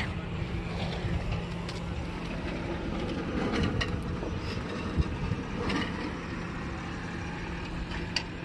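Steady low outdoor rumble of wind on the microphone, with a faint steady hum under it. A few light clicks come through, and a short thump about five seconds in.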